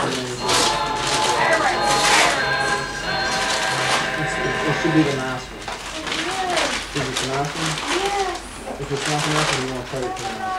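Indistinct voices in the room over background music, with a few short bursts of crinkling paper as presents are unwrapped.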